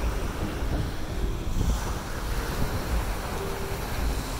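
Ocean surf washing onto a sandy beach, a steady rush of water with low wind rumble buffeting the phone's microphone.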